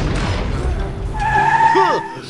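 Cartoon sound effect of a vehicle skidding to a stop: a loud rushing noise with a low rumble, then a high tyre squeal from a little past halfway until the end.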